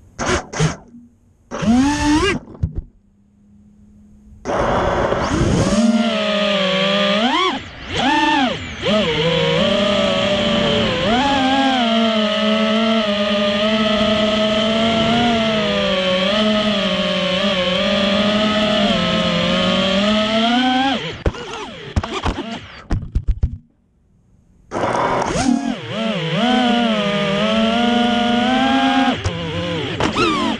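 Racing quadcopter's brushless motors and Ethix S3 propellers whining in flight, the pitch rising and falling with the throttle. Two short rising spin-ups come first, and the whine breaks off for a few seconds about twenty seconds in before it resumes.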